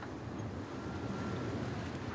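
Steady wind and water noise on a sailing yacht under way, with a faint thin tone lasting about a second in the middle.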